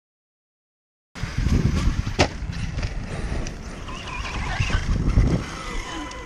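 Dead silence for about a second, then a 1/5-scale ARRMA Kraton electric RC truck comes down from a jump with one sharp knock about two seconds in. A low, uneven rumble of the truck on dirt follows.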